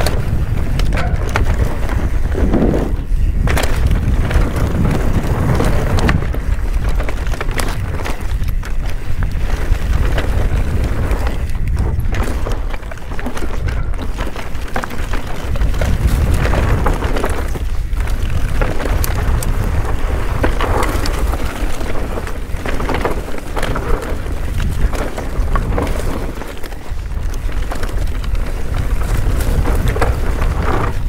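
Wind buffeting the microphone of a chest-mounted action camera on a fast mountain bike descent. Under it run the steady rumble of knobby tyres on dirt singletrack and the frequent sharp clatter of the bike over roots and rocks.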